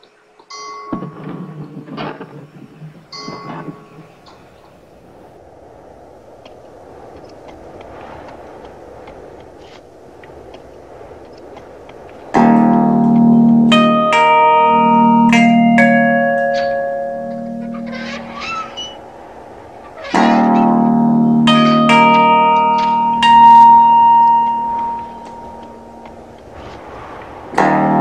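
Guitar intro: a few scattered short sounds and a faint steady hiss, then a full guitar chord struck and left to ring about twelve seconds in, with higher single notes picked over it. A second chord is struck about eight seconds later and rings out.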